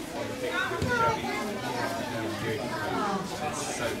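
Women's voices calling and shouting on a football pitch, a string of short shouted calls one after another.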